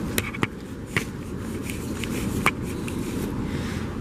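Handling noise on the camera's microphone: rubbing with a few sharp clicks over a steady background hiss, as the fogged-up lens is wiped clear.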